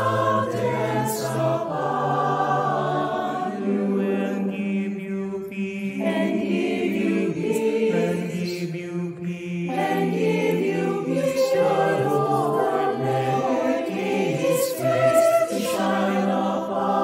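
A mixed choir of men's and women's voices singing a slow choral benediction in long-held chords, with the words "The Lord lift his countenance upon you, and give you peace" and then "The Lord make His face to shine upon you."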